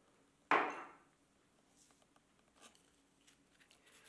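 A single sharp knock about half a second in, then a few faint clicks and taps, as a glass spice jar of ground cinnamon is handled.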